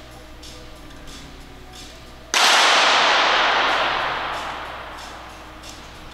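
A sharp crack from a .22 sport pistol shot about two seconds in. A loud hiss follows and fades away over about three seconds.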